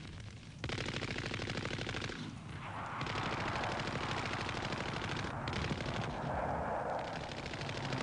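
Rapid automatic gunfire, near-continuous, in an archived radio broadcast recording. It drops off briefly just after the start, then resumes and carries on.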